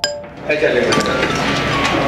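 One ringing mallet-percussion note at the very start, then from about half a second in several people talking at once, with light clinking.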